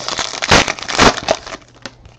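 Plastic trading-card pack wrapper crinkling as it is torn and handled, with two louder crinkles about half a second and a second in, then fading.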